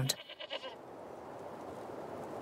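Goat bleating faintly near the start, over a steady low background hiss.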